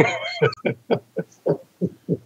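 A man laughing: a high, wavering hoot, then a run of quick pulsed "ha"s, about six a second.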